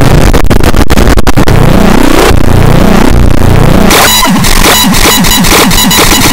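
Very loud, heavily distorted, effects-processed audio: a harsh wall of noise with sweeping pitch streaks and a few split-second dropouts. About four seconds in it turns into a stuttering, glitchy repeating texture.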